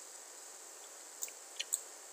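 Faint steady hiss of an open microphone, with three soft short clicks in the second half.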